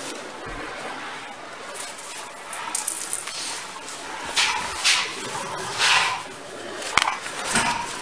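Rustling and movement noise, with several short hissing bursts around the middle and a sharp click about seven seconds in.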